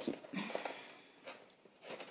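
Faint handling noises: a few short clicks and rustles of wooden colored pencils being picked up and sorted.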